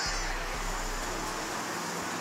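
Outdoor wind buffeting the microphone as a low rumble over a steady hiss of open-air ambience.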